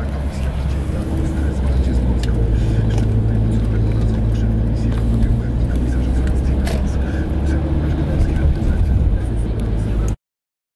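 Steady low rumble of engine and road noise heard from inside a moving car.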